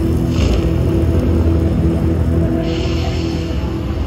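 Jinse Dao slot machine playing its feature music: sustained low, steady tones with two brief whooshing swells, one about a third of a second in and one about two and a half seconds in, as a flame animation sweeps the reels.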